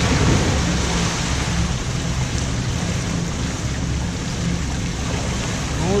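A splash into the pool right at the start, then the steady, echoing hiss of an indoor diving pool hall.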